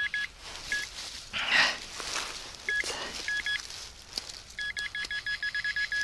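Handheld metal-detecting pinpointer beeping as it is pushed into freshly dug soil, with single short beeps at first, then a fast run of beeps, about eight a second, near the end, which shows the probe is right on the buried metal target. Between the beeps there are a few brief scrapes of gloved hands working the soil.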